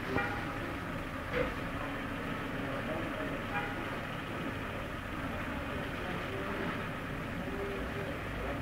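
Steady outdoor background noise: a low rumble and hiss on a phone microphone, with faint voices in the distance and a couple of brief knocks in the first two seconds.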